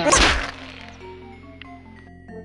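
A short, sharp whack right at the start, lasting about half a second, then quieter background music with held notes.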